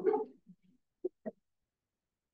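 The tail end of a spoken word, then two very short voice-like sounds about a second in.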